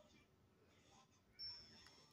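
Near silence: room tone, with a faint thin high tone coming in about one and a half seconds in.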